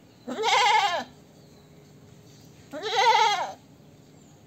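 A goat bleating twice, each bleat under a second long and arching in pitch, about two and a half seconds apart.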